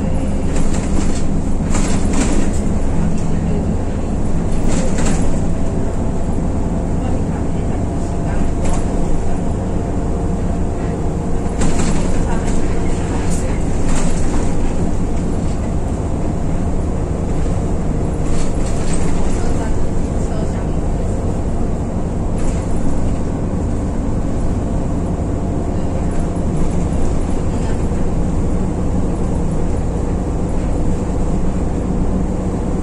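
Inside a city bus on the move: steady engine drone and road noise, with short rattles and clicks from loose interior fittings now and then.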